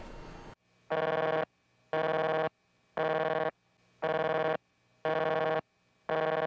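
Old-style telephone busy tone, harsh and raspy, of the kind made by rapidly interrupting DC battery power. It buzzes in bursts of about half a second, once a second.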